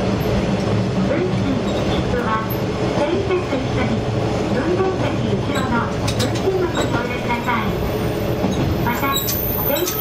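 Diesel railcar running along the line, heard from the cab: a steady engine drone with rolling wheel noise and a few sharp clicks from the rails.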